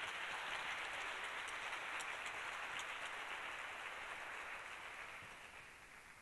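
An audience applauding, a steady patter of many hands clapping that fades away over the last couple of seconds.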